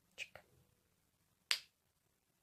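Wooden Jacob's ladder toy clacking as its blocks flip over on their ribbons: two faint ticks near the start, then one sharp click about a second and a half in.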